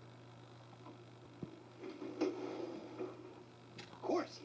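Quiet room tone with a steady low hum, and faint, muffled TV soundtrack audio with a couple of soft clicks in the middle.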